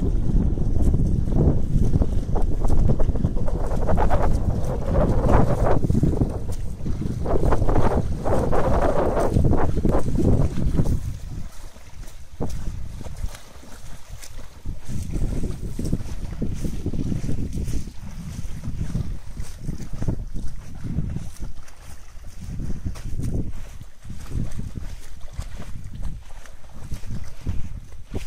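Wind buffeting the microphone: a loud low rumble for roughly the first ten seconds, then weaker, uneven gusts.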